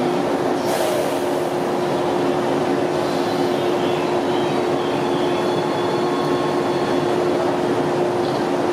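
A JR East 185 series express train standing at a platform with its door open, its onboard equipment giving a steady hum, with a brief hiss about a second in.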